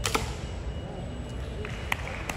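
A sharp knock right at the start, then a low steady room noise with a couple of lighter clicks near the end.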